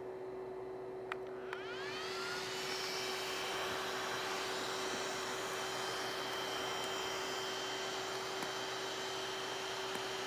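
iluminage Touch IPL hair-removal device powering on: a click about a second in, then its internal cooling fan spins up with a rising whine that levels off. The fan then runs on as a steady rushing hum.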